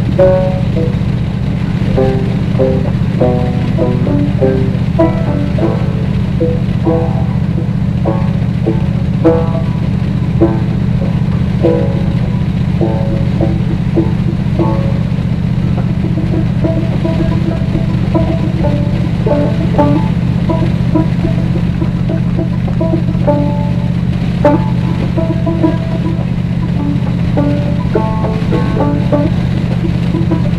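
Background music of short, separate melodic notes over a steady low drone from the car driving at a steady speed.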